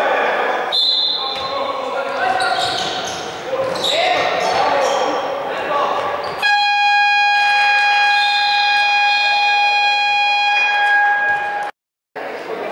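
Basketball scoreboard buzzer sounding one steady tone for about five seconds, starting about halfway through and cutting off just before the end. Before it, players' shouts and a ball bouncing echo in the sports hall.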